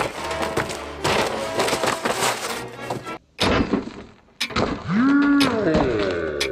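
Hatchet blade chopping into grilled Twinkies on cardboard: a few sharp thuds, over background music. Near the end a pitched tone rises, holds and falls away, followed by falling glides.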